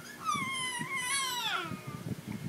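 A baby's long, high-pitched whining cry, held and then falling in pitch near the end.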